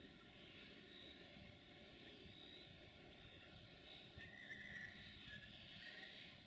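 Near silence: a faint low rumble from a slowly approaching train of Bombardier Talent diesel multiple units, with a faint high tone about four seconds in.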